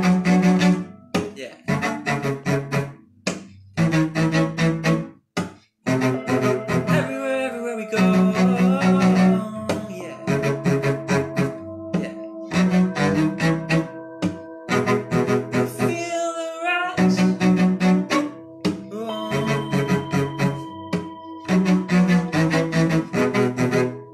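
Cello bowed in slow phrases of low notes, with brief breaks between phrases.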